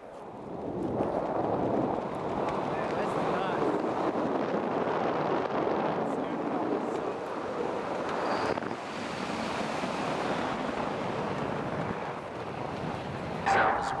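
Wind rushing over the microphone as a tandem parachute descends under canopy: a steady rushing noise that builds up in the first second and then holds.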